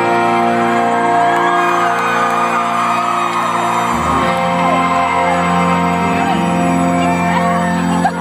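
Live rock band playing an instrumental passage of held keyboard or organ chords, with a low bass part coming in about halfway. Heard from inside the crowd, with whoops and screams over the music.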